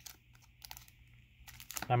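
Faint crinkling and rustling of a foil trading-card booster-pack wrapper being handled, with a few light clicks, growing a little busier near the end.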